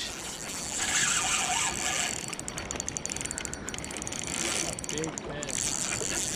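Spinning reel's drag clicking rapidly as a hooked salmon runs and pulls line, densest from about two to four seconds in.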